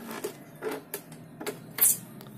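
A small metal screwdriver scraping and prying at the plastic back cover of an Epson L120 printer, levering at its retaining clips. There are scattered light clicks, then one louder, sharp scrape near the end.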